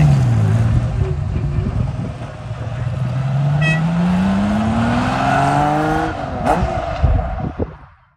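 Lamborghini Miura SV's V12 engine pulling away: its note drops as it eases off at the start, holds low, then climbs steadily for a few seconds as the car accelerates before falling at a gear change about six seconds in. The sound fades out at the very end.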